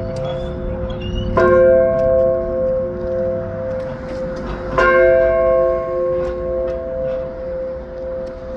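Large steel-alloy fire alarm bell rung by pulling its rope: two strokes about three and a half seconds apart, each ringing on long and still sounding when the next one hits.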